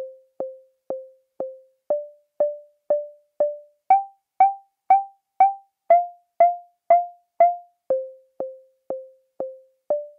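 Resonant CUNSA bandpass filter rung by clock triggers into its audio input: short, decaying, pitched pings, about two a second. A volt-per-octave control signal steps the ringing note every four pings, up from a low note to higher ones, then back down.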